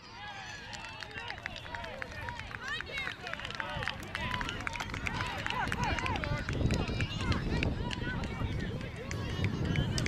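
Several voices calling out over one another across a soccer field, spectators and players shouting with no clear words. From about four seconds in, a low wind rumble on the microphone rises underneath.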